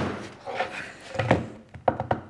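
Wooden end-grain cutting board rocked on a wooden workbench, knocking down on its glued-on feet three or four times. The knocks are a test for wobble, and the board rocks only slightly.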